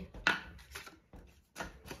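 Strips of paper scratch-off lottery tickets being handled and flicked through on a table, giving a few short papery rustles and taps with a quiet gap in the middle.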